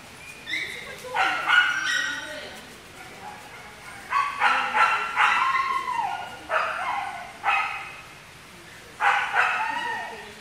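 A husky-type dog whining and yipping in a run of about six high, wavering cries, some sliding down in pitch. He is fussing for his absent owner while a stranger handles him.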